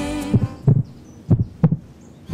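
A song ends, and a heartbeat sound effect follows: two low double thumps, lub-dub, about a second apart.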